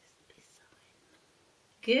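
Near silence: quiet room tone, then a woman's voice comes in near the end saying "Peter" in a drawn-out, sing-song way.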